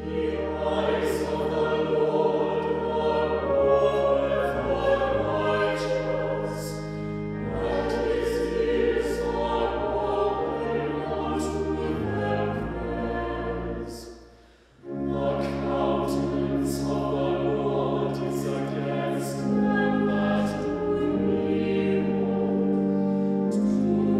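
Mixed chamber choir singing sustained chords, with deep held bass notes underneath; the singing breaks off briefly a little past halfway, then resumes.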